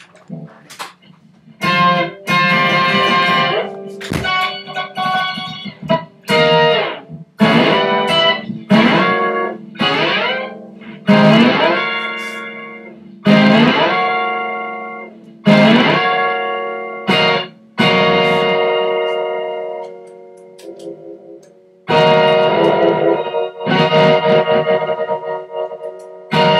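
Electric guitar, a Telecaster-style solid body, played through effects pedals and an amp: loud chords struck every second or two, each left to ring and fade, with a sweeping sound over the top of each. A short chopped, stuttering passage comes about two-thirds of the way through.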